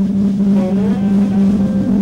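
Live band's electric guitars and bass holding one loud distorted note, steady and droning, with a higher tone sliding up and back down about halfway through; the drums are nearly absent.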